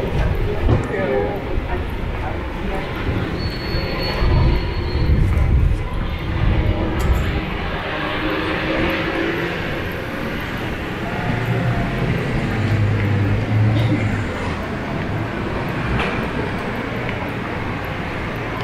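Busy city-street traffic noise with buses and cars running on the road beside the sidewalk, plus voices of passersby. A low engine drone stands out for a few seconds past the middle.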